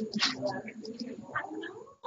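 Brief, indistinct voice sounds with no clear words, heard over a video-call audio line.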